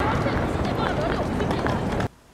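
Street noise of a busy pedestrian square: voices of many passers-by talking over a steady low rumble of city traffic.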